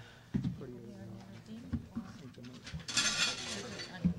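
Indistinct chatter of several people talking in a meeting room, with a short burst of noise, the loudest moment, about three seconds in.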